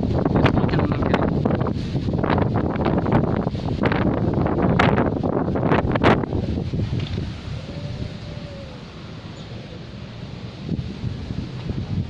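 Strong gusty wind buffeting the microphone and rustling the leaves of shrubs and small trees: the gust front of an approaching desert dust storm (haboob). The gusts ease about seven seconds in.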